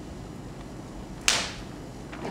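A single sharp snap a little past a second in, dying away quickly, over faint steady room tone.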